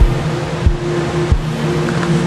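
A steady low drone of several held tones, with a deep thud about every two-thirds of a second, like a pulsing film-score beat.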